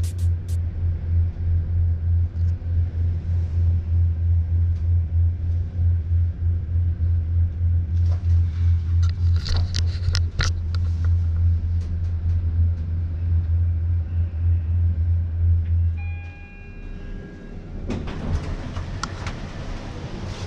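Lift running with a loud, pulsing low hum and rumble, with a few clicks around the middle. About four seconds from the end the hum stops and a short electronic chime sounds. A couple of seconds later a broad rush of open-air noise comes in.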